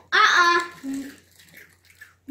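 A child's voice: a short drawn-out exclamation, then a brief low hum about a second in.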